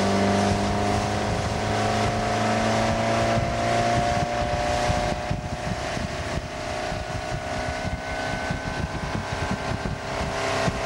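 Tow boat's motor running steadily at speed, with water and wind rushing past the microphone. The deep part of the engine hum fades after about three seconds.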